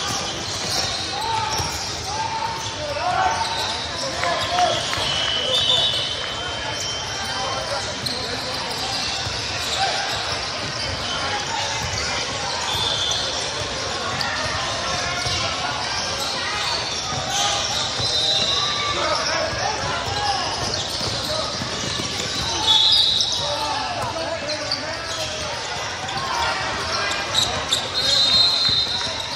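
Basketball game sounds: a ball dribbling on the court, short high sneaker squeaks now and then, and the voices of players and spectators calling out.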